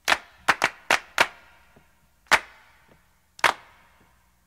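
A series of sharp percussive hits, about seven, in an uneven rhythm: four close together in the first second or so, then two more spaced farther apart, each dying away quickly.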